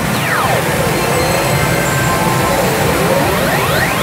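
A Sanyo Umi Monogatari pachinko machine plays its electronic reach-presentation music. A sweeping tone falls steeply just after the start and another rises near the end, over a steady parlour din.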